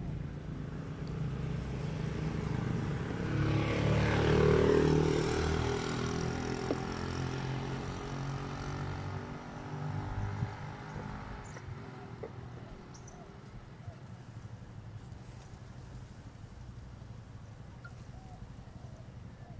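A motor vehicle passing by. It grows louder to a peak about four seconds in, drops in pitch as it moves away, and fades out by about twelve seconds.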